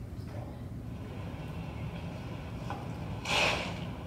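Steady low rumble of room noise, with a brief, louder rush of noise a little over three seconds in.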